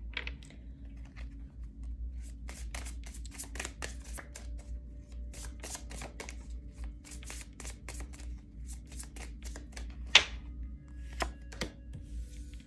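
A tarot deck being shuffled by hand: a quick, irregular run of soft card clicks and flicks, with a couple of louder snaps near the end as a card is set down on the table.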